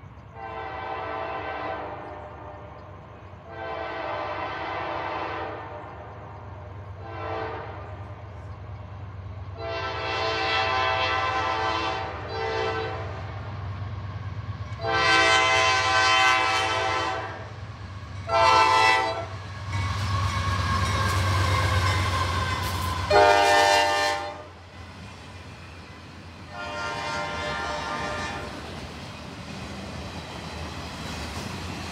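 A freight locomotive's air horn blowing a string of grade-crossing signals as the train approaches, starting long, long, short, long, about nine blasts in all and loudest past the middle. Under the horn the locomotive's engine rumble builds, and its pitch drops as the locomotive goes by. The autorack cars then roll past on the rails while the horn sounds once more.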